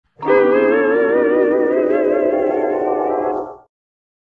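Cartoon musical sound effect: a held chord of several tones wavering together with a slow vibrato, a dreamy flashback cue. It fades out about three and a half seconds in.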